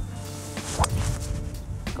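A driver's clubhead striking a golf ball off the tee: one sharp crack a little under a second in, over steady background music.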